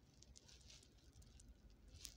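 Near silence: room tone with a few faint, soft ticks and rustles.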